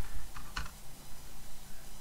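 Computer keyboard being typed on: a few separate, unevenly spaced keystrokes as a word is typed.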